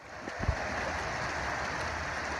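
Steady rushing of a muddy, flood-swollen creek, with one low bump about half a second in.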